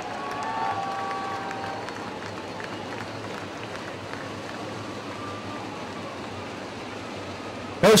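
Steady track noise from a field of 410 winged sprint cars rolling in four-wide formation, their engines running together with crowd noise.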